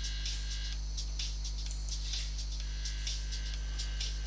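Steady electrical mains hum with a faint buzz of higher overtones, unchanging throughout, picked up by the recording chain.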